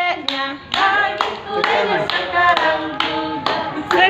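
A small group of voices singing a birthday song together, clapping along in time at about two claps a second.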